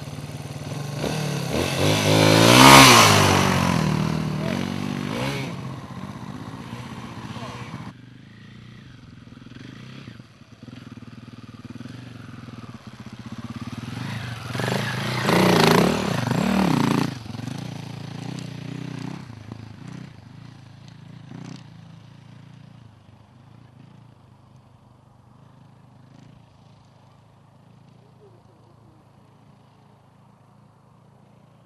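Off-road trail motorcycles riding past on a dirt track: the engine note swells to a loud pass about three seconds in, and a second bike revs past loudly around fifteen to seventeen seconds. Then the engine sound fades away into the distance.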